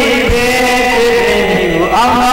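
Music: a chanting voice holds one long note that slowly falls in pitch, then rises again near the end, over instrumental accompaniment.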